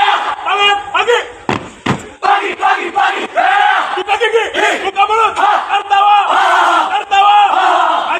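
A group of men shouting a yel-yel drill chant in unison, in short, repeated yells, with one sharp impact about two seconds in.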